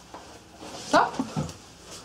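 A woman's voice asking a short questioning "Co?" with rising pitch about a second in, with faint rustling and handling around it.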